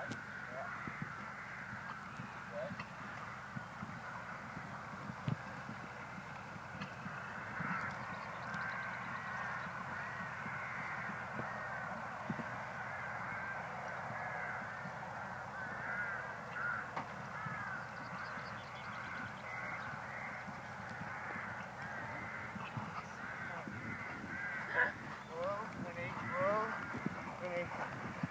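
A flock of birds calling from the trees, many short, arched, overlapping calls throughout, with occasional dull thumps underneath.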